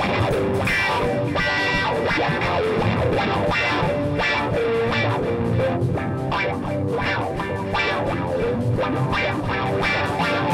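A rock band playing an instrumental passage led by guitar, with sustained notes over a steady beat.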